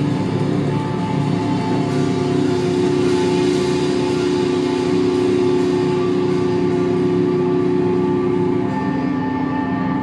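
Live heavy rock band holding a long, droning chord on distorted electric guitars and bass, ringing out at the close of a song. About nine seconds in, one low held note cuts off and a higher steady tone comes in.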